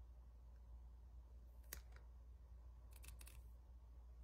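Near silence, with a faint click under two seconds in and a quick run of faint clicks around three seconds in, from fingernails handling a nail polish strip.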